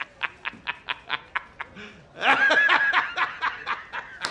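A man laughing heartily in quick rhythmic bursts, about five or six a second. It eases off briefly, then swells into a louder, higher laugh about two seconds in.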